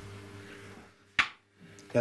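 A single sharp click about a second in, over a faint steady low hum.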